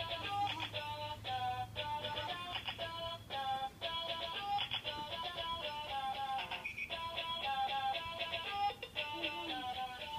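Electronic baby toy playing a synthesized tune, a melody of short, evenly paced notes.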